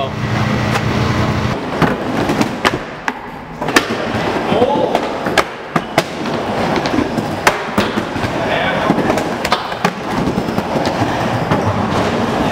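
Skateboard riding a wooden bowl: wheels rolling with a steady noise, broken by many sharp clacks of the board and trucks hitting the wood and coping.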